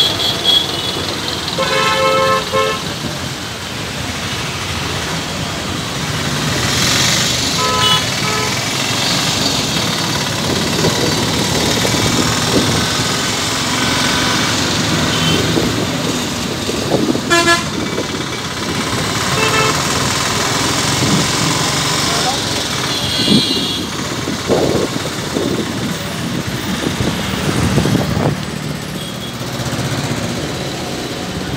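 Busy city street traffic heard from a moving vehicle: a steady run of engine and tyre noise with several short vehicle horn toots from the surrounding cars, auto-rickshaws and trucks.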